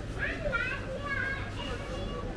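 High-pitched voices calling out over people's background chatter, loudest in the first second or so.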